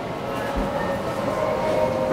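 Steady background noise of a busy indoor fast-food restaurant in a shopping centre: an even noisy hum with faint steady tones, and a brief low thump about half a second in.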